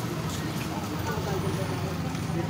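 Street noise: a vehicle engine running steadily close by, with indistinct voices in the background.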